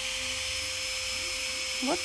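A small motor running steadily: a constant hum under an even hiss, with no distinct strokes or clicks.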